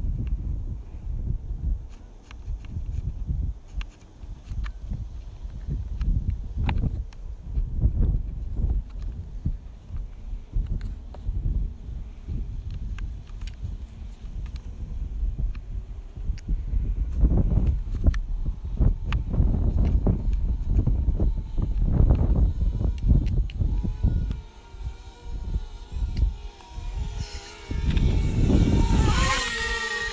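Wind buffeting the microphone in uneven gusts, strongest in the second half. Near the end a small quadcopter drone's propeller whine comes in as a steady hum that grows louder as the drone comes close.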